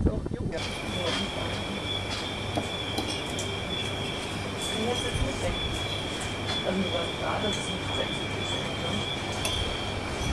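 Dining room ambience at night: low voices of diners and scattered faint clinks, over a steady two-tone high-pitched whine and a low hum that start suddenly about half a second in.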